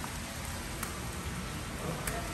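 A steady hiss of falling water, with a few faint clicks about a second apart.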